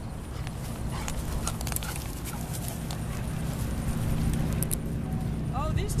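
Low, steady wind rumble on the microphone, building slowly, with light footsteps and rustling through dry grass. A voice comes in near the end.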